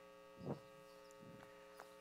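Near silence with a steady electrical mains hum, and one brief soft thump about half a second in.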